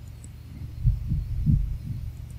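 Steady low hum with three or four soft, low thumps about a second in.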